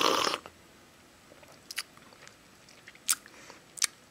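A person sipping a drink from a stemmed glass, the sip heard in the first half-second, followed by quiet with a few faint clicks of swallowing and mouth sounds.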